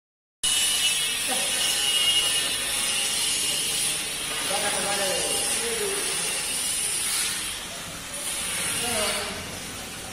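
Faint, indistinct voices in the background over a steady high-pitched hiss.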